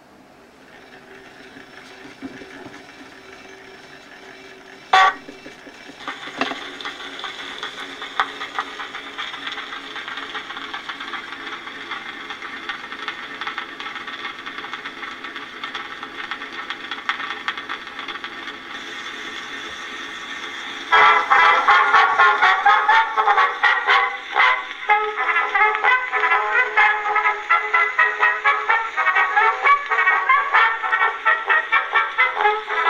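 1909 Edison Fireside Model A cylinder phonograph starting up: a sharp click about five seconds in, then steady surface hiss from the turning cylinder. About 21 seconds in, a brass-led recording starts playing loudly through the horn.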